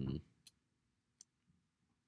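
A drawn-out spoken 'um' trails off, then near silence in a small room, broken by two faint, short clicks.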